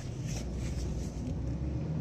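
Car running at low speed through a U-turn, heard from inside the cabin: a steady low engine and road rumble.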